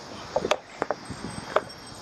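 A few short, sharp clicks, about three within the first second and a half, over a faint steady hiss.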